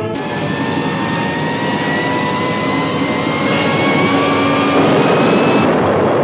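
Film sound effect of machinery: a loud rushing noise with a whine that rises slowly in pitch and builds in loudness toward the end.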